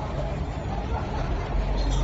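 Steady low rumble of road traffic with an indistinct hubbub of voices, the rumble swelling a little louder near the end.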